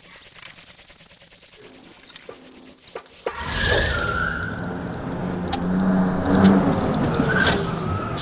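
A car engine cuts in suddenly about three seconds in and runs loudly, after a few quiet seconds, with a few sharp clicks over it.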